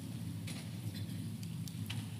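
Quiet room tone: a low steady hum with a few faint clicks, the clearest one near the end.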